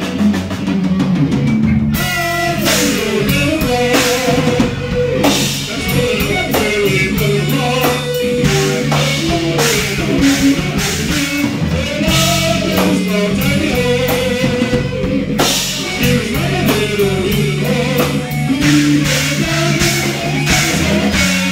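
Live rock band playing with electric guitars, bass guitar and drum kit, a lead line bending up and down in pitch above a steady low bass part.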